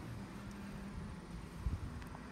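Quiet workshop room tone with a faint steady low hum, and one soft low thump near the end.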